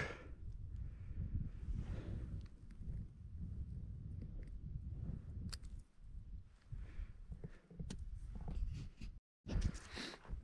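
Faint handling noise as a caught rotan is unhooked from a small lure: rustling of gloves and clothing and a few small clicks, over a steady low rumble. The sound cuts out briefly near the end.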